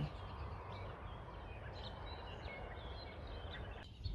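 Faint scattered bird chirps over steady low outdoor background noise.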